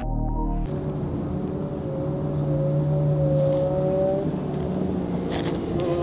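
Music cuts off under a second in, giving way to the inside of a 2024 Ford F-150 pickup cruising at highway speed: a steady engine drone with tyre and road noise, the engine note rising slightly and then easing off about four seconds in.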